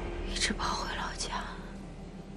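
A woman's breathy, whispery vocal sounds, two strokes about a second apart, as she weeps.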